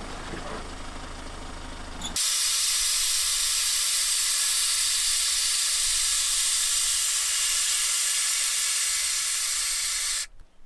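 A loud, steady hiss that starts abruptly about two seconds in and holds evenly until it cuts off.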